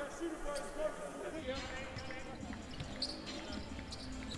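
Low-level basketball game sound: a ball being dribbled on a hardwood court, with faint voices around it. The sound changes abruptly about a second and a half in.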